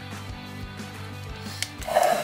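Background music with steady low sustained notes, with a few light knocks from a plastic juicer pulp container being handled.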